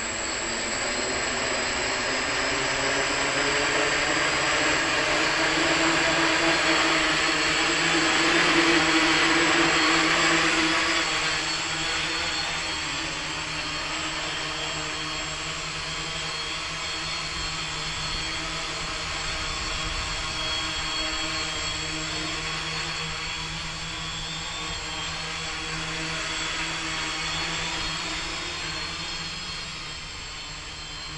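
Tri-Four multirotor's electric motors and propellers whirring in flight. The sound is loudest in the first ten seconds or so as it lifts off close by, then steadier and a little fainter as it climbs away.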